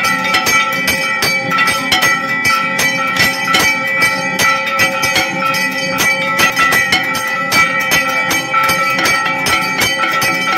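Temple bells and percussion struck rapidly and evenly, without pause, with steady ringing tones over the strikes: the bell-ringing of a temple aarti.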